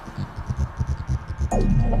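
Electronic trance music: a fast, even throbbing bass pulse, then about one and a half seconds in a louder sustained deep bass note takes over, with a falling pitch sweep.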